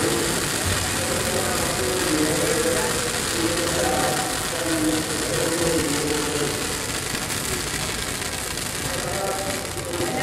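Fountain fireworks spraying sparks from a burning effigy, heard as a steady hiss, over the voices of a large crowd.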